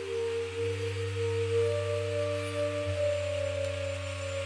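Ambient film-score music: a low drone with held, overlapping tones above it. The upper notes step to new pitches about half a second in and again near three seconds.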